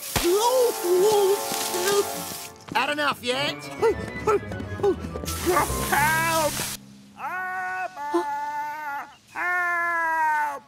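Water spraying with a hiss from a high-pressure hose jet, twice, over a man's wordless cries and groans and background music.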